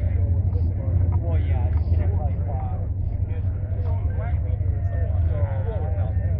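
Indistinct chatter of people talking among the parked cars, over a steady low rumble.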